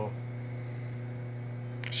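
Steady low electrical hum, with no other sound until a short breath-like noise near the end.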